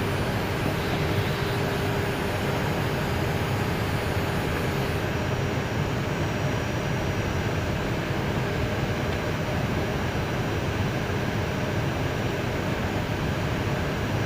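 Steady cockpit noise of an Airbus A319 rolling slowly on the apron: the jet engines at idle mixed with the hiss of the cockpit ventilation. A faint hum and some of the high hiss fade about five seconds in.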